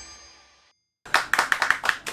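Guitar music fading out, a moment of silence, then a few people clapping their hands in quick, uneven claps.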